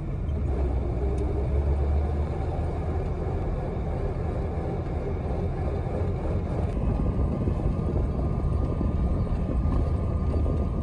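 Engine and road noise of a moving vehicle heard from inside its cab: a steady low rumble. A faint steady whine joins in about seven seconds in.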